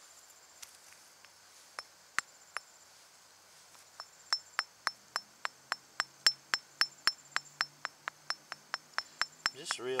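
Light hammer taps on a cast-iron Civil War artillery shell, knocking loose the last rust and crust left after electrolysis. A few scattered taps, then from about four seconds in a steady run of light taps, three or four a second, each with a faint metallic ring.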